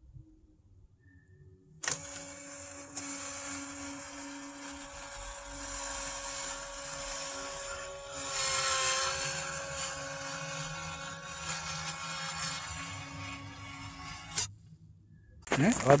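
Automatic chicken coop door's electric motor running for about twelve seconds as it drives the sliding door open, a steady whine that starts and stops with a click. The door is opening under power again after ice was cleaned out of its track and gear.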